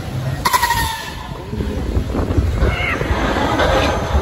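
An older Top Spin thrill ride creaking as its arms swing the gondola, with a short metallic squeal about half a second in over a low rumble from the ride.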